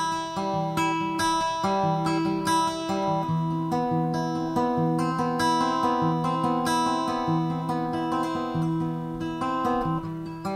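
Instrumental passage of a song with no singing: a guitar plays a continuous run of plucked notes over shifting low bass notes.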